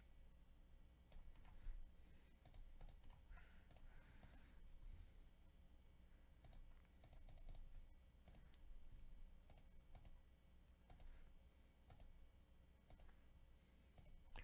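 Faint computer mouse clicks, repeated at irregular intervals through near silence.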